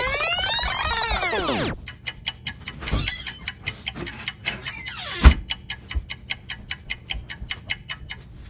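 A long sweeping creak for about two seconds, typical of a door being opened, then a fast steady ticking, about five ticks a second, broken by a few knocks, the loudest about five seconds in.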